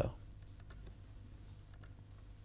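A steady low hum of a quiet room, with a handful of faint, sharp clicks scattered through it, two close together near the end.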